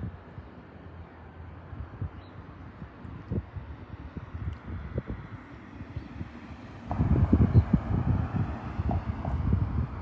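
Wind buffeting a phone's microphone outdoors, an uneven low rumble of gusts that turns much stronger for the last few seconds.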